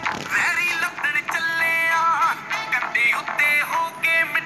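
Punjabi pop song: a man singing held, gliding phrases over a backing track.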